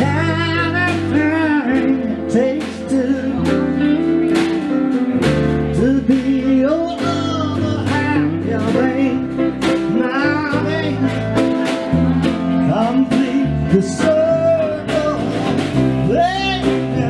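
Live band music: a man singing with vibrato into a microphone, backed by electric guitar and electric keyboard over a steady bass line.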